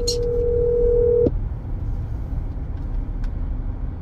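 Car cabin road noise from a car driving slowly, a steady low rumble. Over it, a steady single-pitched electronic tone holds for about a second and then cuts off suddenly.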